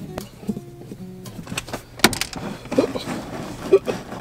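Clicks, knocks and light rattling from a car's rear interior storage bin being unscrewed and lifted out, with the sharpest click about halfway through. Quiet background music plays underneath.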